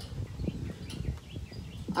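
A few faint bird chirps over a low, uneven rumble of wind on the microphone.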